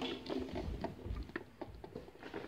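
Faint scattered clicks and soft low bumps of a phone being handled close to its microphone, in a small room.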